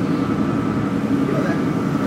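Automatic tunnel car wash running: the cloth strips and water sprays working over a car make a steady, even rushing noise, dulled by the glass window it is heard through.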